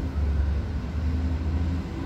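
Low, steady rumble of street traffic with a faint engine hum.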